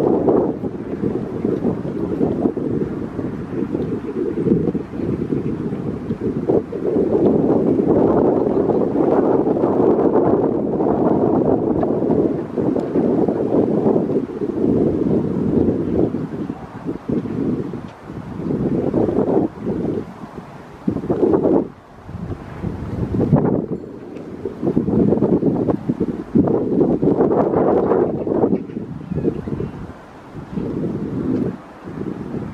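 Wind gusting across the camera microphone: a loud, low rushing noise that swells and drops, with a few brief lulls in the second half.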